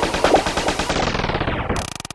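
Electronic psytrance music in a transition: a rapid run of evenly repeated stuttering hits with no steady kick. From about a second in, a filter sweep closes down and the treble drains away, leaving a darker, duller roll.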